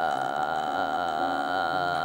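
Sustained eerie synthesized drone from a horror film's score: several high tones held steady over a slowly wavering middle layer.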